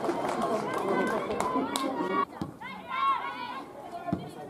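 Several voices talking over one another close by, then, after a sudden drop in level about halfway through, high-pitched shouted calls from women footballers on the pitch, with a few sharp knocks in between.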